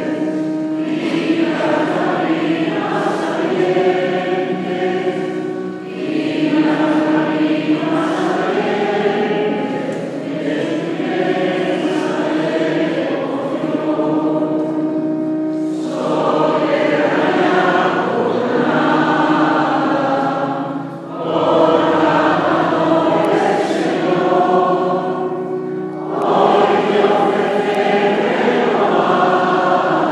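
Mixed choir of women and men singing a hymn, in phrases a few seconds long separated by brief breaks.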